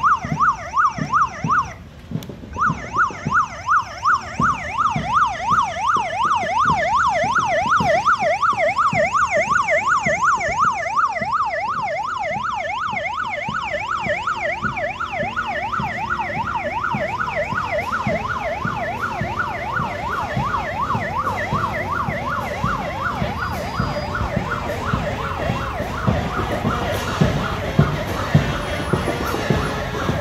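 Electronic vehicle siren sounding a fast up-and-down yelp. It breaks off briefly about two seconds in, then runs on and fades in the second half as drumbeats come through near the end.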